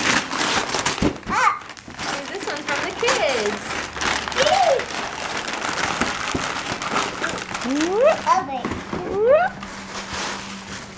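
Paper crinkling steadily as a present is unwrapped, with a young child's voice in a few rising and falling sounds, the loudest near the end.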